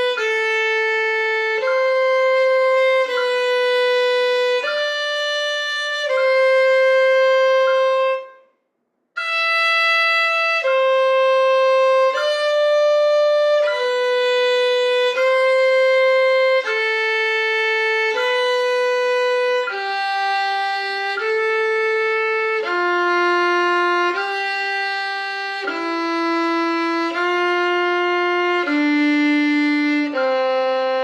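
Solo violin playing a slow bowed exercise: one long held note about every second and a half, with a brief break about eight and a half seconds in. Over the last ten seconds the line steps down to lower notes.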